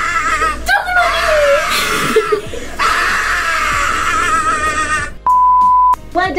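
A voice wavering up and down in pitch over music, cut off about five seconds in by a steady high beep lasting under a second: a censor bleep.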